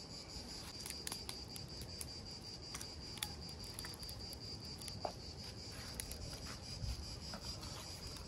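Insects chirring in a steady, thin, high-pitched tone, with scattered faint crackles and pops from a small wood fire.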